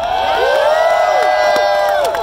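Crowd cheering: many overlapping voices shouting and holding long whoops, swelling in over the first half second and dropping away near the end.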